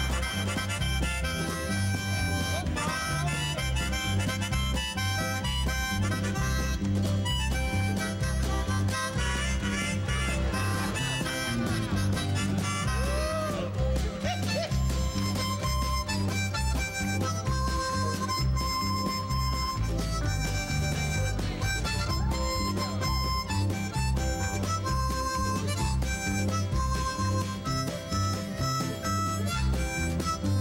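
Harmonicas playing a tune together over a bass line with a steady beat.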